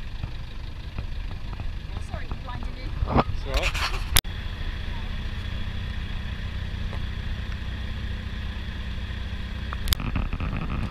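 Vehicle engines idling with a steady low rumble, with people talking in the background. A sharp click comes about four seconds in, and after it a steadier engine hum carries on.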